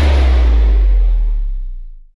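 Logo-sting sound effect: the tail of a deep cinematic boom whose bass rumble sinks in pitch under a fading hiss, dying away near the end.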